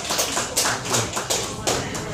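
Hand claps from a small audience, a run of sharp claps about three or four a second that stops near the end.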